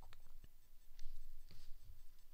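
A few faint, sharp clicks and scratchy rustles of handling at a desk, the clearest about a second and a second and a half in, over a low steady hum.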